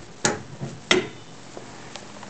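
Radiation shielding being set in place by hand: two sharp knocks about two-thirds of a second apart.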